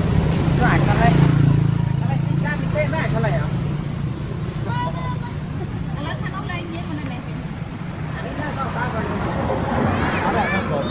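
A motor vehicle's engine running nearby, loudest in the first two seconds and then fading, with scattered distant voices over it.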